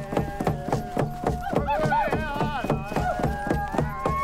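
Frame drums beaten in a steady fast beat, about four strokes a second, with men chanting and a flute playing held notes over it.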